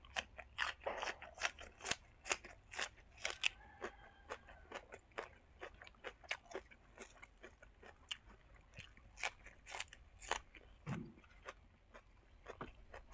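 Close-up crunching and chewing of raw spring onion and fresh greens, many sharp crisp crunches, dense in the first few seconds and then thinning out to slower chewing.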